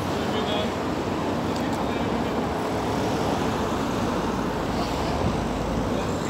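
Road traffic noise on a city street with a murmur of voices; a car drives past near the end.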